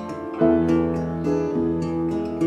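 Acoustic guitar playing picked chords with piano accompaniment, an instrumental passage without singing; a new chord rings out about half a second in.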